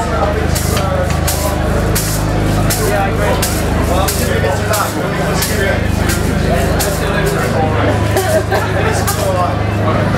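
Live garage-punk band playing loud: drums striking a steady, even beat over electric guitars and a steady low bass line.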